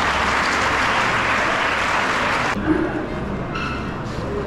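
Audience applause, a dense, even clapping that cuts off sharply about two and a half seconds in, leaving quieter background noise.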